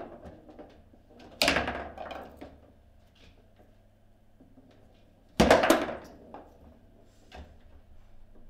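Table football (foosball) play: two loud knocks of the ball being struck and slamming against the table, about four seconds apart, each ringing briefly through the table, with faint clicks of the ball and rods between.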